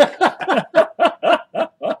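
Hearty male laughter: a run of short, evenly spaced 'ha' bursts, about four a second, that stops near the end.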